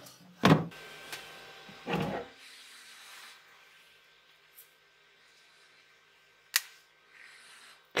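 Handling knocks as the printer's acrylic lid and build plate are set and held. About six and a half seconds in comes one sharp snap as a cured resin print is broken off the metal build plate.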